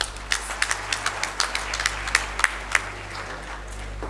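Audience applauding in a hall: a dense patter of hand claps with a few louder individual claps standing out, easing slightly toward the end.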